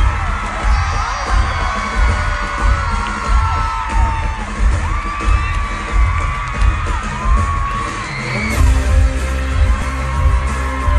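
Live stadium concert heard through a phone microphone: a heavy bass beat under many shrieks and whoops from the crowd, with sustained music chords coming in about eight and a half seconds in.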